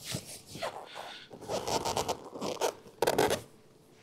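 Tensioning strap on a hard-shell roof-top tent being pulled tight, the webbing rasping through its fitting in a run of quick pulls, the last and loudest about three seconds in.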